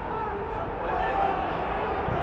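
Background sound of a football match broadcast during open play: a steady hiss with faint, distant held voices from the pitch of a largely empty stadium.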